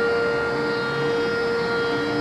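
Harmonium holding one steady, unchanging note over the accompanying drone, with no singing or tabla strokes.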